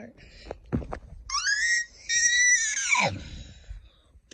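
A high-pitched squealing scream in a voice, about a second and a half long. It rises, holds, and then drops steeply in pitch at the end.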